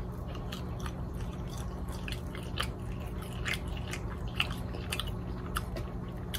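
Close-miked chewing of boiled seafood, with short wet mouth clicks and smacks at an irregular pace.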